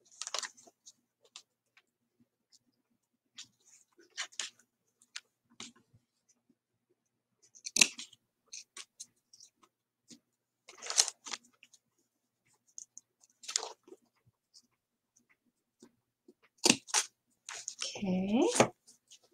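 Scissors cutting paper: separate crisp snips every few seconds, with quiet between them.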